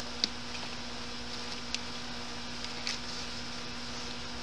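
Steady low electrical hum, with a few faint soft taps and rustles of hands adding potting soil around a tomato seedling in a bucket and pressing it down.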